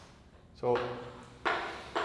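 Chalk writing on a blackboard: short scratchy strokes, the first two coming in quick succession about a second and a half in.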